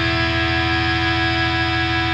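Instrumental passage of a rock song with no singing: an electric guitar chord held steady over a fast, even low pulse.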